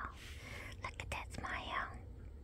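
Soft whispered speech, a woman murmuring to a dog, with a few small clicks.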